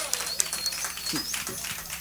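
Light, scattered audience applause made of many small claps, with a few faint voices calling out.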